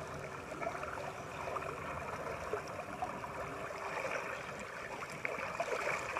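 Steady lapping and sloshing of lake water as a Great Dane swims in, paddling through the shallows.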